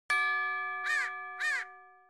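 An edited-in chime sound effect: one bright ding that rings and slowly fades. Two short notes that rise and fall in pitch sound over it about a second in and again half a second later.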